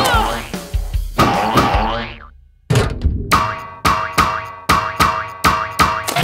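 Cartoon background music with comic sound effects. The music breaks off for a moment about two and a half seconds in, then comes back with a steady beat of roughly two to three notes a second.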